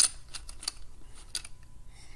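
Plastic Lego bricks being handled and pressed into place: a sharp click at the start, then a few lighter clicks and taps.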